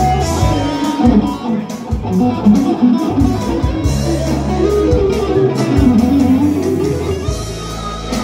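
Amplified Stratocaster-style electric guitar played live: a moving lead line of single notes over held low bass notes.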